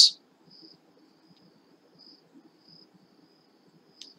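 Faint, high-pitched insect trill in the background, a thin steady tone that swells into short chirps every second or so.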